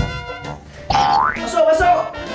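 Upbeat background music, with a cartoon-style comedy sound effect about a second in: a quick upward slide in pitch followed by a wobbling tone.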